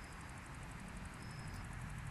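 Faint, steady low rumble of a Piper J3 Cub's small piston engine at idle, heard from a distance as the plane rolls out on grass after landing, over an even hiss with a faint rapid, high ticking.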